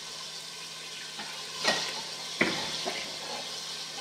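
Pork browning in hot oil in a stainless steel pot, sizzling steadily, with two sharp knocks of the metal stirring spoon against the pot a little before and after the middle.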